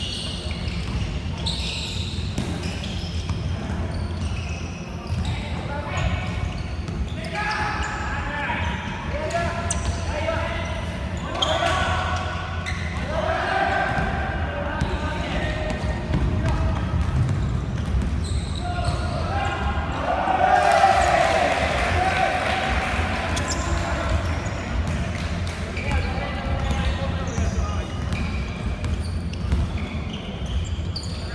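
Basketball bouncing on a hardwood gym floor during play, with players' voices calling out over it, loudest about two-thirds of the way through.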